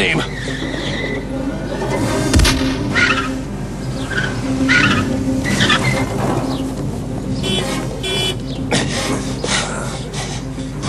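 A car driving hard with tyres squealing, a heavy thump about two and a half seconds in, and trash bins being knocked over, all under background film music.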